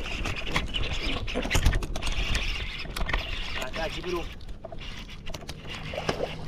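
Clicks and knocks of a baitcasting reel being handled and cranked, with water moving around a small boat.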